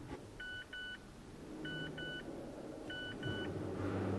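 Electronic two-tone beeps from a Mazda2's dashboard: three double beeps, each pair about a second and a quarter after the last, over a faint low hum.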